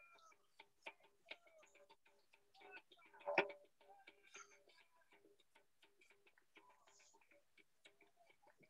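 Faint, rhythmic ticking, several ticks a second, over a faint tone that is cut on and off in the same even rhythm. A louder brief sound comes about three and a half seconds in.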